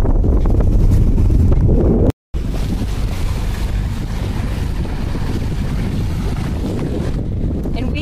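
Wind buffeting a phone microphone on a sailboat, a steady low rumble that cuts out briefly about two seconds in.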